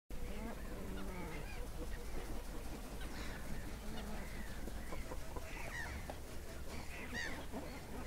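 A lakeside chorus of waterbirds calling, with geese honking among them: many short overlapping calls throughout, over a steady low rumble.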